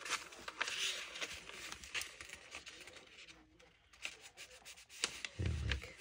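Fingers rubbing and smoothing the paper pages of an old book while a page is folded down and creased: a soft rustle with a few light crackles.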